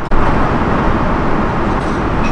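Airliner cabin noise in flight: a steady, even rush of engine and airflow noise. It comes in after a brief dropout at the very start.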